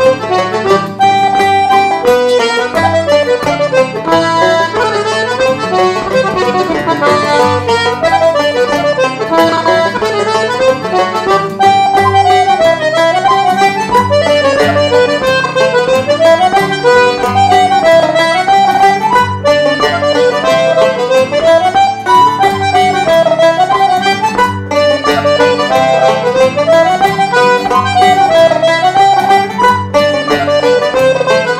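Irish traditional dance tune, a barndance, played on button accordion and tenor banjo in unison with strummed guitar chords underneath. It runs at a steady, bouncy pulse, with the accordion the loudest.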